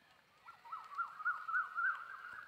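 A high, wavering animal call starting about half a second in, its pitch bobbing up and down about four times a second.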